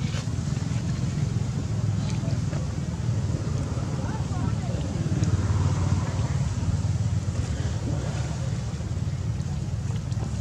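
Steady, unevenly fluctuating low rumble of wind on the microphone, with a faint murmur of distant voices, strongest about halfway through.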